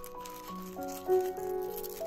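Soft background music, a melody of held notes, over light paper rustling as fingers peel a sticker seal from a white paper envelope.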